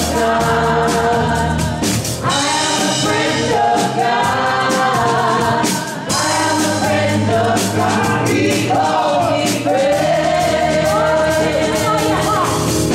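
Gospel worship song sung by a small group of singers on microphones, with amplified band backing and a steady beat.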